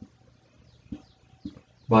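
Marker writing on a glass lightboard: a few light taps of the tip on the glass and faint squeaky strokes, then a man's voice starts near the end.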